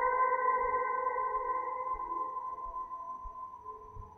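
Ambient electric guitar (a Gibson Les Paul LPJ) holding one sustained note, drenched in reverb and delay, ringing out and fading steadily away.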